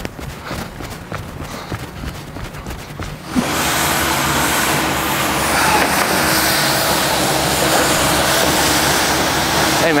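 A run of short sharp ticks for about three seconds, then a sudden change to steady downtown street traffic noise with a vehicle engine's low hum, which carries on to the end.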